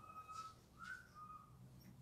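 Near silence: room tone with three faint, short, thin high tones, each a fraction of a second long, like a soft whistle.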